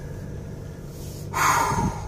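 Steady low hum of a car on the road, heard inside the cabin; about a second and a half in, a man gives a short breathy laugh.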